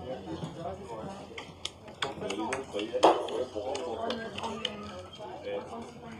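Indistinct voices talking in a room, broken by several sharp clicks and knocks. The loudest knock comes about three seconds in.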